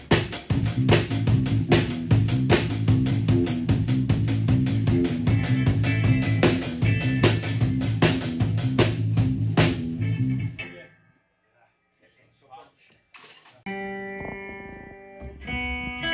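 Rock band rehearsing: a drum kit keeps up a fast, even beat over a bass line, and the playing stops about ten and a half seconds in. After a short pause an electric guitar rings out with sustained chords near the end.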